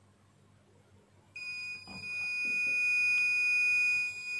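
Tenma 72-8155 LCR meter's continuity buzzer sounding one steady high-pitched beep, starting about a second in, as the test leads close across a piece of wire: the wire has continuity. A few faint clicks of the clips being handled come just after it starts.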